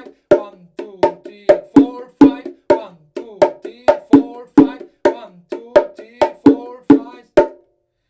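Pair of bongo drums played by hand in a repeating five-beat (5/4) pattern: sharp strokes with a short, pitched ring, about three a second. The playing stops shortly before the end.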